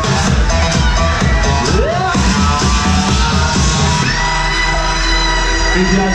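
Electronic dance music from a DJ set, with a steady kick-drum beat. About four seconds in the beat drops out, leaving a held bass note and a long high synth tone.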